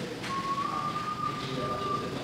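A single steady high-pitched tone over room noise. It starts shortly after the beginning, rises slightly, then holds for nearly two seconds.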